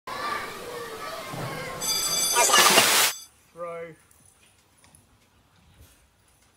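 Children's voices shouting and calling at play for about two and a half seconds, cut off by a short loud burst of hiss like TV static; then one brief voiced sound and near quiet.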